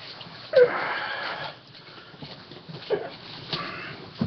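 A man's loud breath through the nose close to the microphone, starting sharply about half a second in and lasting about a second. A weaker, similar breath comes near the end.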